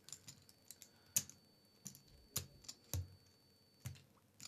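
Poker chips clicking as a player handles a stack at the table: irregular sharp clicks, several a second, the loudest about a second in and again near three seconds.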